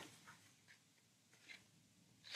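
Near silence with two faint, brief rustles of paperback pages being handled, the second about a second and a half in.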